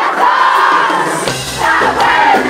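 Amplified live concert music with a lead vocal into a microphone over the backing track. The deep bass returns a little over a second in.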